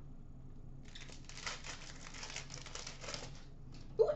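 Wrapper of a hockey card pack being torn open and crinkled by hand, a dense crackle starting about a second in and dying away just before the end.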